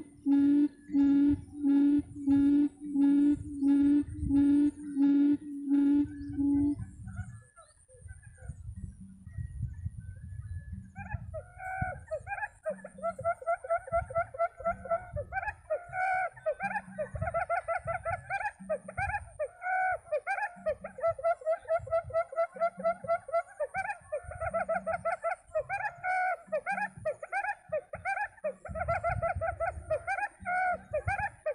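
Quail call played as a lure through a loudspeaker. It starts as a run of low, evenly spaced hooting notes, about two a second, that stops about six seconds in. After a short lull, a faster, higher chattering call repeats over and over.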